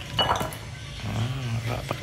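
Raw pig trotters tipped from a plastic colander, landing in a ceramic bowl: a few short knocks and clinks in the first half second.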